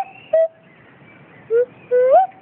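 Nose flute played in short, clear notes: a brief note about a third of a second in, a pause of about a second, then two short notes near the end, the last sliding upward.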